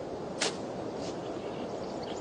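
Steady hiss of an old film soundtrack, with one short, sharp click about half a second in.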